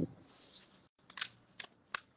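A square sheet of origami paper sliding and rustling under the hands as it is folded corner to corner into a triangle, then a few short crisp crackles as the paper is pressed into place.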